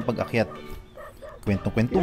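A man's voice-over narration with background music playing under it.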